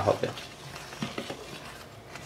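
Metal spoon stirring and scraping dry powder in a stainless steel bowl, with a few light clinks against the bowl about a second in.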